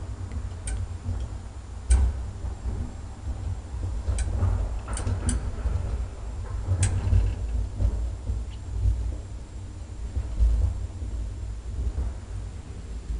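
Old elevator, modernised by Ekmans Hiss, riding between floors: a steady low rumble from the moving car with about six sharp clicks and ticks, most of them in the first seven seconds.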